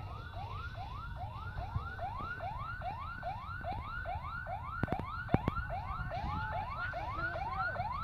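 Emergency vehicle siren sounding a fast yelp, about three rising sweeps a second. A couple of sharp cracks come about five seconds in.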